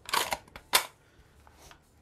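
Clicking and rattling of an AK-pattern shotgun and its box magazine being handled: a brief clatter, then one sharp click under a second in.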